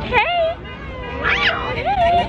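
Young women's high-pitched excited squeals and laughter, with one sharp rising-and-falling squeal about halfway through.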